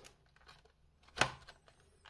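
Clear plastic clamshell pack of a laptop RAM module being prised open by hand: a few faint plastic ticks, then one sharp crackle a little over a second in.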